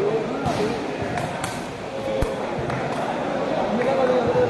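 A few sharp thuds of a sepak takraw ball being kicked during a rally, over steady crowd voices in a large hall.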